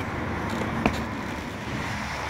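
Steady street traffic noise, with one sharp click a little under a second in from bolt cutter jaws straining on a Kryptonite U-lock's hardened steel shackle, which they fail to cut.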